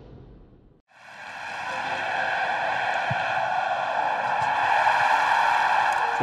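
A rushing, swelling sound effect under a logo transition: after a brief silence about a second in, a steady hiss-like rush fades in and slowly grows louder.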